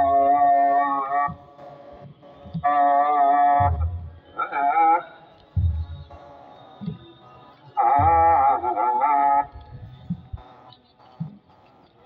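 Ethiopian Orthodox liturgical chant: short phrases of held, wavering sung notes with pauses between them, and a few slow deep beats of a kebero drum.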